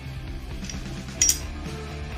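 A single light metallic clink about a second and a quarter in, from the steel pistol slide and threaded barrel being handled, over background rock music.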